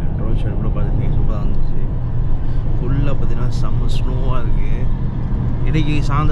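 Steady low rumble of a car driving, heard inside the cabin, under a man talking.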